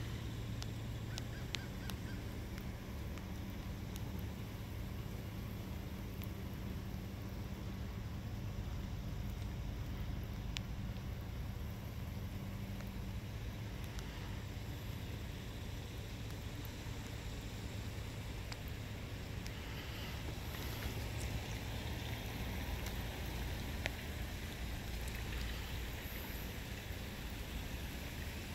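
Steady outdoor background noise with a faint hiss, a low steady hum that fades out about halfway through, and a few faint light ticks.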